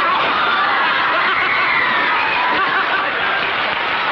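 Several people laughing and shouting together in a continuous jumble of voices, with a high voice cutting through in the middle.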